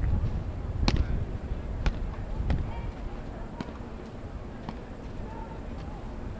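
Tennis balls struck by rackets and bouncing during a rally: five sharp pops roughly a second apart, the loudest about a second in, over a low wind rumble on the microphone.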